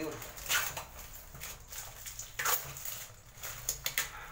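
A plastic supplement canister handled and turned over in the hands: short knocks and scrapes at uneven intervals, several bunched together near the end.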